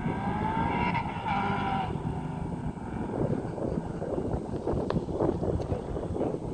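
Two modified V8 cars, a head-and-cam Camaro SS and a C5 Corvette Z06, accelerating hard from a distance in a race. The engine pitch climbs, drops at a gear change about a second in, and climbs again, then settles into a steady distant engine drone.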